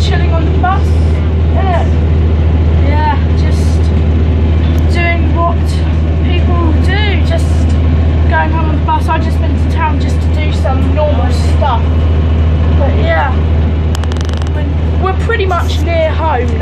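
Bus engine running with a steady low drone inside the passenger cabin, with voices talking over it throughout.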